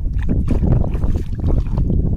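Wet mud squelching and shallow water sloshing in quick irregular splats as a hand digs deep into a tidal mudflat and bare feet shift in it, with wind rumbling on the microphone.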